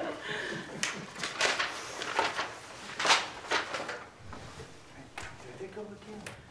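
Quiet murmured voices with scattered short, sharp rustles and knocks, handling noise from the players between pieces.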